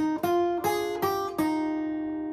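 Acoustic guitar fingerpicked: about five single melody notes in quick succession, picking out the vocal melody of the line just sung, with the last note left ringing and slowly fading.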